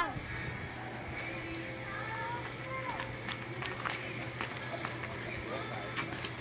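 Children's voices calling faintly at a distance and scattered footsteps of kids running on a dirt street, over a steady low hum.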